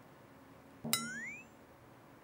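A short edited sound effect about a second in: a sudden ping whose pitch slides upward and fades within about half a second. Otherwise faint room tone.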